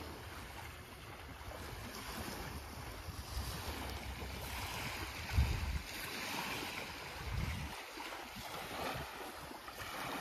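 Small waves lapping on a sandy beach, a soft steady wash, with wind gusting on the microphone as a low rumble.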